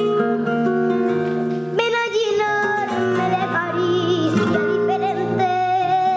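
A young girl singing a Spanish song in flamenco style, with long held notes that waver and bend, over acoustic guitar accompaniment.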